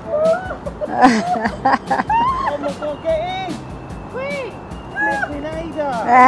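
Indistinct chatter and laughter from several people over background music.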